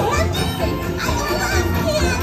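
Parade soundtrack music playing from the float's speakers, with singing over a pulsing bass, mixed with children's voices from the watching crowd.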